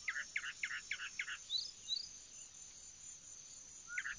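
Forest ambience: a bird calls a quick series of about six notes, then two short high chirps, over a steady high-pitched insect buzz.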